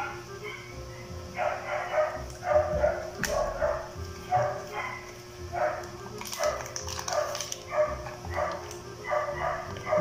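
A dog barking over and over, about twice a second.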